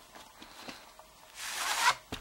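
A VHS cassette sliding out of its cardboard sleeve: light handling rustles, then a scraping rub of plastic on cardboard lasting about half a second, growing louder and stopping abruptly near the end.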